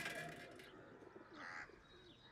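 Quiet outdoor ambience with a faint bird call about one and a half seconds in, just after music fades out at the start.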